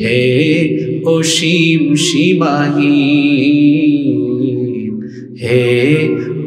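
A man singing a Bengali hamd, an Islamic song in praise of God, in long, drawn-out melismatic notes. He breaks briefly for breath about five seconds in and then carries on.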